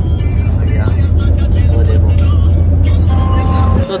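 Loud, steady low rumble of a moving passenger train heard from inside the carriage, with voices in the background; it cuts off suddenly near the end.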